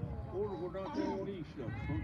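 Indistinct voices of several people talking, overlapping and too unclear to make out words.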